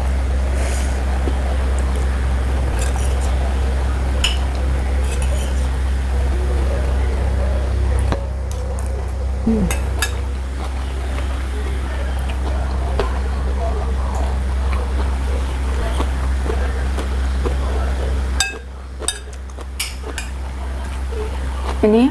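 Metal cutlery clinking and scraping against a ceramic plate as someone eats, in scattered light clicks over a steady low hum that drops away near the end.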